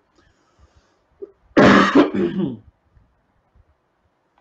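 A man clearing his throat once, a harsh rasp lasting about a second.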